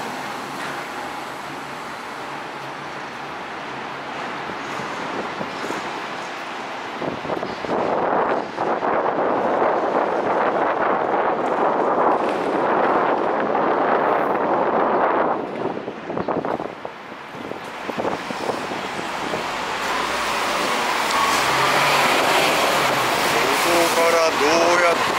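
City road traffic going by, a steady noise that swells louder for several seconds in the middle and builds again toward the end as vehicles, including buses, pass close by.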